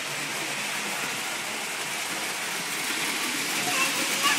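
Lionel toy train running on the layout's track: a steady whirring noise, with faint voices near the end.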